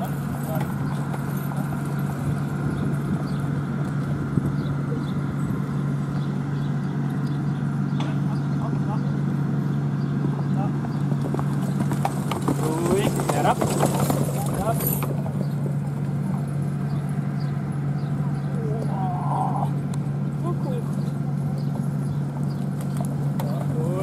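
Hoofbeats of a two-horse carriage team trotting over grass and dirt, over a steady low hum and background voices.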